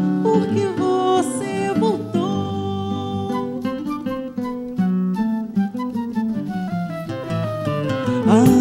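Samba ensemble playing an instrumental passage between sung lines: a flute carries the melody over seven-string guitar and cavaquinho.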